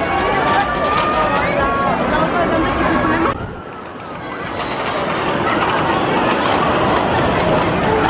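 Crowd chatter that cuts off suddenly about three seconds in. It is followed by a rumble that grows steadily louder, with clicks: a wooden roller coaster train rolling along its track, with voices.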